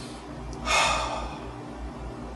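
A quick, audible breath in by the narrator, about half a second long, a little under a second in, taken before the next sentence. A faint steady low hum runs underneath.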